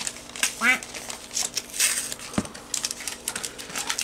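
Foil Pokémon booster pack wrapper crinkling and rustling as it is handled, with scattered short clicks and a brief voice sound early on.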